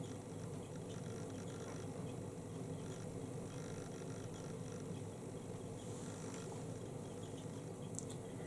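Quiet, steady room tone with a faint continuous hum.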